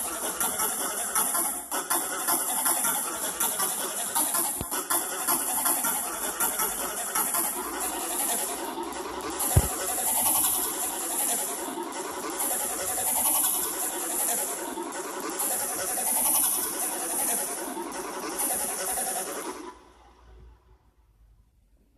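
Harsh, heavily distorted remix audio of a toy-commercial soundtrack: a dense, noisy wash with a hissing high band that swells and fades every second or two. It cuts off suddenly near the end.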